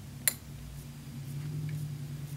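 One sharp little metal click as small shear screw parts are handled, over a steady low hum.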